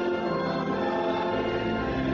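Congregation singing a hymn together over sustained instrumental chords.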